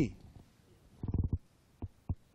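A man's voice making a short, low, throaty sound about a second in, followed by a faint mouth click near the end.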